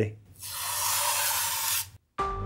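Protective plastic film being peeled off the metal shroud of a GeForce GTX 1080 Ti graphics card: a steady hiss for about a second and a half that cuts off suddenly.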